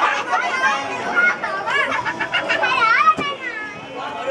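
Children's high-pitched voices talking and calling out over one another, with a single sharp click about three seconds in.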